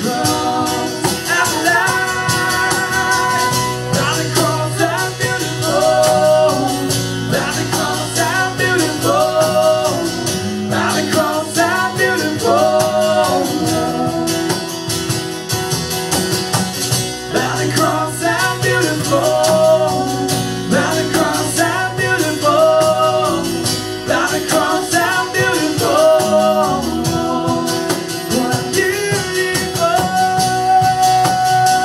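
Live acoustic worship song: guitar accompaniment with a repeating melody line over steady bass notes.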